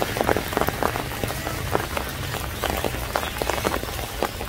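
Spring rain falling, with many separate drops landing as quick clicks over a steady hiss and a low rumble underneath.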